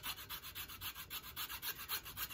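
Coping saw blade sawing through a thin tulsi (holy basil) twig, a quick even back-and-forth rasping of about five strokes a second as a bead is cut off.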